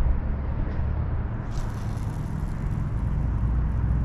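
Steady low rumble of wind buffeting the microphone, with a faint hiss rising over it partway through.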